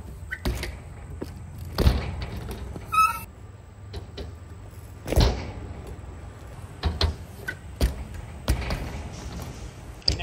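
BMX bike riding a skatepark ramp: tyres rolling over the concrete and ramp surface, with several heavy thuds as the wheels hit the ramp, the loudest about two seconds and five seconds in.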